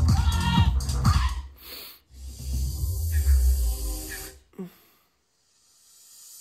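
Electronic dance music played loud through a Sony mini hi-fi system, with a repeating vocal phrase and then a bass-heavy passage. The music cuts off suddenly about four and a half seconds in, leaving near silence and then a faint rising hiss.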